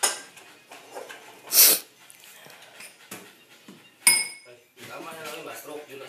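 Dog sounds from excited dogs, with a short, loud hissing burst about a second and a half in and a sharp, ringing metallic clink about four seconds in.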